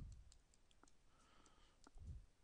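Near silence with a few faint, sharp clicks spread irregularly through it: a stylus tapping on a tablet screen as words are handwritten.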